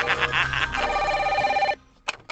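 Laughter, then a telephone ringing with a steady tone that cuts off suddenly shortly before the end.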